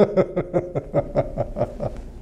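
A man's low chuckling laugh: a quick run of short "heh" pulses, about seven a second, that stops just before the end.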